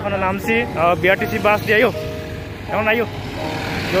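Voices, with the noise of road traffic underneath; a bus passes close to the microphone near the end.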